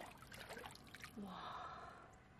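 A person's short breathy gasp about a second in, after a few faint ticks of a finger dabbling in shallow water.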